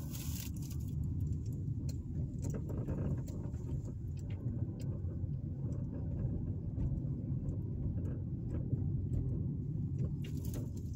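Car driving at low speed, heard from inside the cabin: a steady low rumble of engine and road noise, with a few faint ticks.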